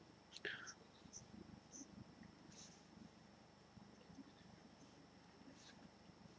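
Near silence: faint room tone with a thin, steady, high-pitched electronic tone, and a short soft hiss about half a second in.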